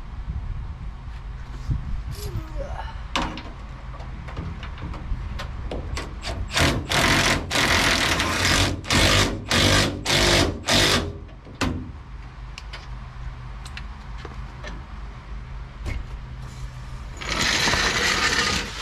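Cordless power driver with a socket running in a quick run of about seven short bursts in the middle, and once more near the end, driving the mounting bolts of an RV basement air-conditioner unit.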